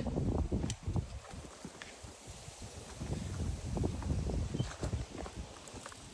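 Footsteps crunching irregularly through dry grass, twigs and stony ground, with wind rumbling on the microphone.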